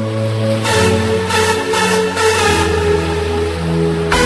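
Electronic dance music: sustained synthesizer chords over a held bass note, with the bass stepping down to a lower note about two and a half seconds in.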